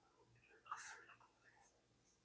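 Near silence, broken by one faint, breathy whisper or breath from a person about a second in.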